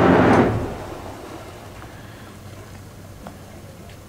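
A yacht's electric bow thruster running, a steady low hum over the noise of water being churned out of the bow tunnel as it pushes the bow to port. It stops about half a second in and fades away, leaving faint background with a small click near the end.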